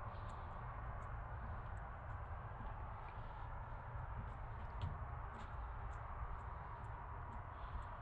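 Faint, steady soft brushing of a paintbrush laying off wet gelcoat on a fibreglass mould, with a few faint ticks, over a steady low background rumble.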